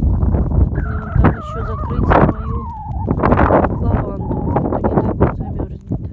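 Wind buffeting the microphone in a blizzard, with a high wavering call over it that slides down in pitch for about two seconds near the start.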